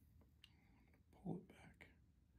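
Near silence, broken about a second in by a brief soft whispered murmur from the person, with a few faint clicks around it.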